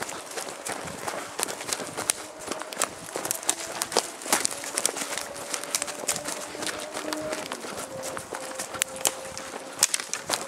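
Two people running through woodland: quick, uneven footfalls on leaf litter, with twigs cracking underfoot. A faint steady hum runs underneath in the second half.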